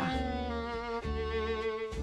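Background music of slow, held bowed-string chords, violin and cello, with the chord changing about a second in.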